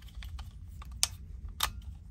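Handling noise of two pistols, a Walther PDP Compact and a Walther Q4 SF, turned over together in the hands: scattered light clicks and taps, with a sharper click about a second in and another a little past halfway, over a low steady hum.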